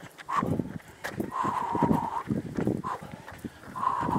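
A runner's hard breathing while running, a short breath then a long one roughly every two and a half seconds, over running footfalls about three a second.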